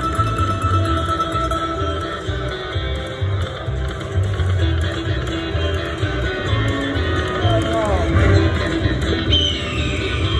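Buffalo video slot machine playing its free-games bonus music and reel-spin and win-tally sounds, over a steady low background rumble. A quick falling sound effect comes about eight seconds in.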